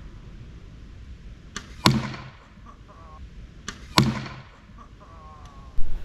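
Arrow striking a wooden target twice, about two seconds apart. Each strike is a faint tick followed a quarter second later by a sharp hit that rings away quickly.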